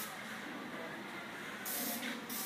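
A short hiss of an aerosol spray can near the end, over a faint steady hiss, as cleaner is sprayed into the engine bay.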